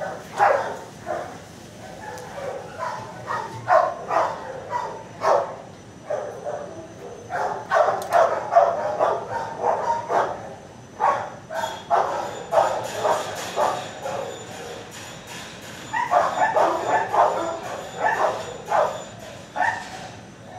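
Shelter dogs barking in repeated short bursts, with busier spells about eight seconds in and again near the end.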